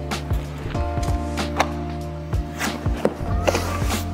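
Foam packing pieces and metal parts knocking and clattering as a kit is lifted out of its cardboard box, several scattered knocks over steady background music.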